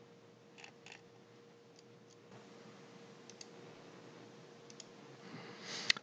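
Faint computer mouse clicks, a few soft clicks spread through, some in quick pairs, over low room hiss and a faint steady hum.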